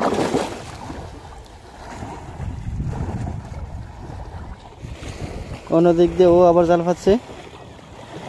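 Wind rumbling on the microphone over water, with splashing from a boy moving fast through a pond, after a loud burst at the very start. About six seconds in, a person's voice gives a long wavering call lasting about a second.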